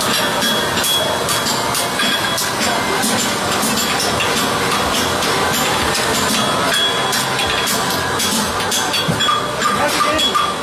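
Farrier's hammer striking a red-hot steel draft horse hind shoe on an anvil in quick, repeated blows, about two or three a second, with the anvil ringing.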